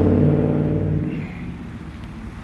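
A car engine running steadily, fading away after about a second.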